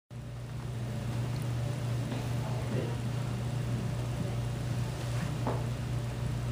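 A steady low hum of room background noise, with faint murmured voices now and then.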